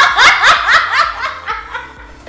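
A woman laughing hard, in quick repeated bursts of laughter about four a second that die down near the end.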